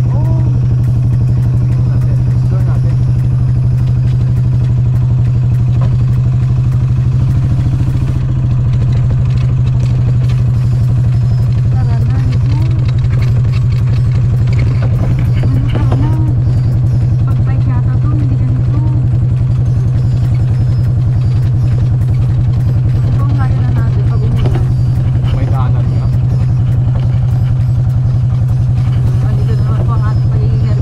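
Golf cart driving along at a steady speed, its motor a constant low hum that never changes pitch. A woman's voice comes in over it a few times.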